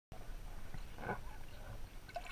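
Faint, muffled underwater noise picked up by a submerged camera: a low rumble of moving water, with a soft swish about a second in.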